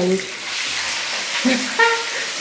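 Chicken pieces shallow-frying in hot oil in a frying pan, a steady sizzle as they are turned with tongs. A brief voice comes in near the end.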